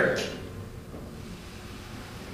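Faint, steady hiss of a small gas torch being lit at the end of a Nerf gun, just after a man's voice trails off.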